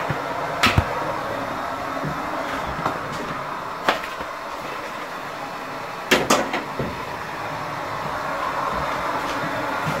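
A few sharp knocks and clicks over a steady background hiss: one just under a second in, another near four seconds, and a short cluster a little after six seconds.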